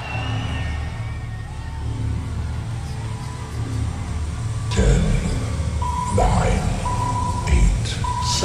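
Countdown intro sound effects: a deep rumbling, pulsing bass build, a heavy hit about five seconds in, then a short high beep about once a second as the countdown ticks down.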